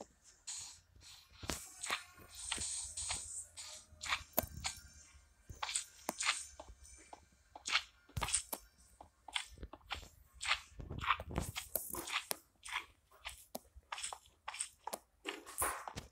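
Irregular close-up crunching and crackling, many short crisp clicks in quick uneven succession.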